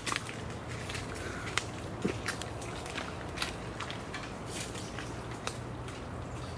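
Irregular crackling and snapping of dry leaves and twigs, like footsteps moving through mangrove brush, over a faint steady hum.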